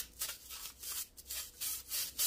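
Bristles of a Kuvings REVO830 juicer's strainer-cleaning brush being twisted back and forth over the stainless steel mesh strainer: a quick, rhythmic scrubbing of short strokes, about four a second.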